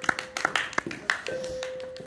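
A small group clapping a short round of applause, scattered claps that thin out after about a second. A faint steady tone holds underneath in the second half.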